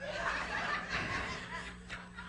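Soft laughter that fades away over about a second and a half, with a steady low hum underneath.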